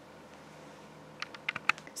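Low room tone, then a quick run of about half a dozen light, sharp clicks in the last second.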